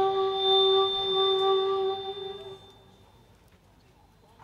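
A single steady, held musical tone with overtones that fades out about two and a half seconds in, leaving only faint room sound.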